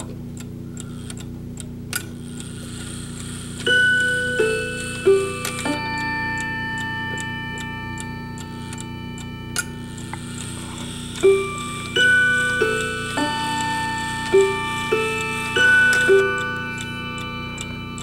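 Sligh mechanical clock ticking, then its chime striking a four-note phrase about four seconds in and two more four-note phrases later on, each note ringing on. The chime is set off as the hands are turned by hand.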